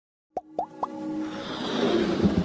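Animated logo intro sting: three quick plop sound effects, each gliding up in pitch, about a quarter second apart, followed by a swelling musical build-up that grows louder.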